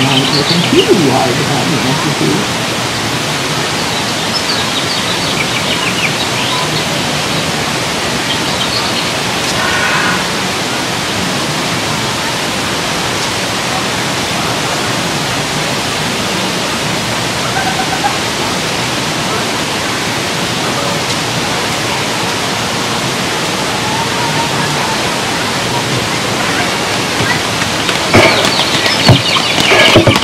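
Steady rushing water, like a waterfall or rapids, with faint voices of people passing by. Near the end, voices and footfalls grow louder.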